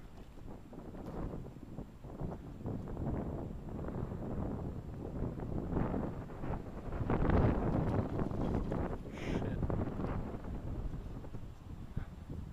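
Wind buffeting the microphone in uneven gusts, a low rumble that swells to its loudest about seven to eight seconds in.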